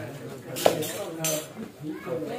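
Kitchen knife cutting cooked meat on a wooden chopping block, with a sharp knock of the blade striking the block about two-thirds of a second in.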